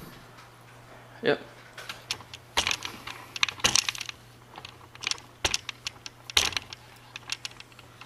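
Irregular sharp clicks and taps of handling noise as the camera is moved and a hand grips a digital scale's plastic handheld readout, over a steady low hum.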